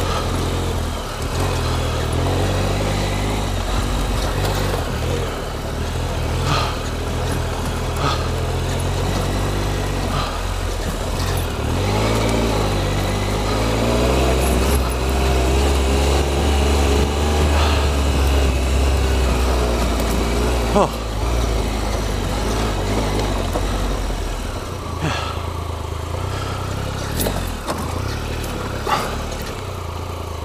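Triumph Explorer XCa's three-cylinder engine running at low speed on a rutted dirt track, its note rising through the middle and easing off a few seconds before the end. Scattered sharp knocks and clatters from the wheels and suspension over the rough ground.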